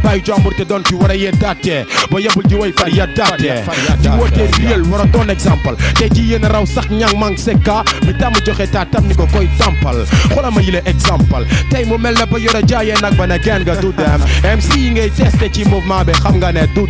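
Hip hop track: a rapped vocal over a drum beat. A heavy bass line comes in about four seconds in and drops out briefly twice.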